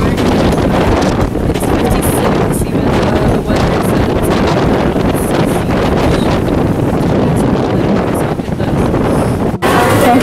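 Strong wind buffeting the camera microphone: loud, rough, rumbling noise that cuts off abruptly near the end.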